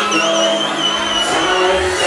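Live concert sound from a reggaeton show: a high, whistle-like tone glides up and holds with a slight waver for about a second and a half over the loud music and crowd, with the bass coming in about a second in.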